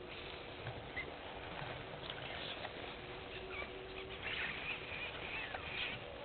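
Outdoor bush ambience: a steady hiss with small birds chirping, the calls coming thickest in the last two seconds.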